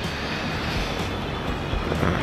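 Steady city street noise: the even rush of passing road traffic.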